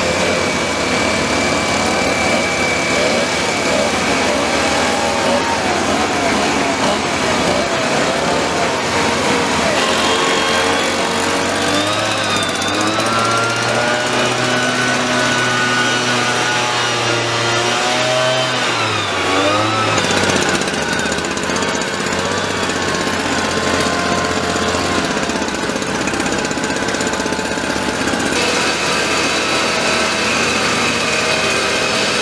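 Several backpack motorized mist-blower sprayers, each driven by a small two-stroke engine, running together at speed. Their pitches drift and glide against each other as the throttles change, most in the middle stretch.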